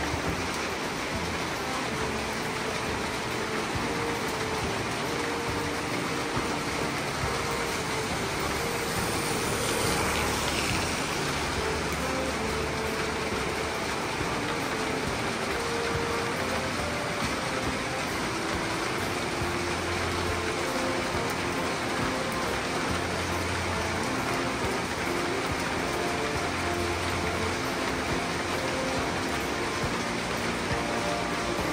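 Steady rain falling on wet street pavement, swelling briefly about ten seconds in, with soft background music over it.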